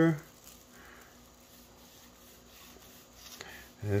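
A long knife slicing down through the crusty bark and tender meat of a smoked beef plate rib on a wooden cutting board, barely audible.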